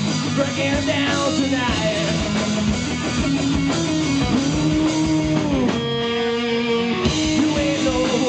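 Rock band playing live: electric guitars, bass guitar and drum kit. A little before the six-second mark the drums drop out and a held chord rings for about a second before the full band crashes back in.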